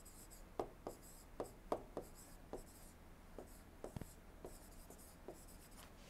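Stylus writing on the glass of an interactive display board: about a dozen faint, irregular taps with brief scratchy strokes as a short phrase is handwritten.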